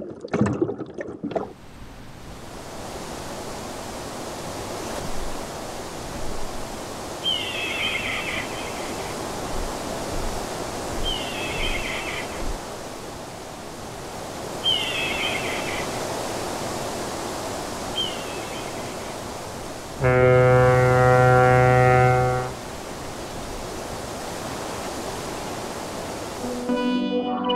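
Steady rush of ocean surf, with four short high chirps about three and a half seconds apart. About twenty seconds in, a loud deep horn-like blast is held for about two and a half seconds, then cuts off.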